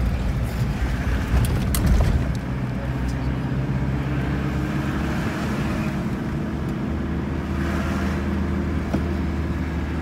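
Car engine running steadily under road noise, heard from inside the cabin as the vehicle drives along. A few sharp knocks come between one and two seconds in.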